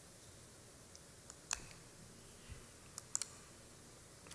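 A few faint, sharp clicks from handling at a lectern while a presentation slide is advanced: one about a second and a half in, then a quick cluster of three near the end, with a soft low thump between them, over quiet room tone.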